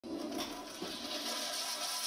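Solid gold toilet flushing through its lever-operated flush valve (flushometer): a steady rush of water.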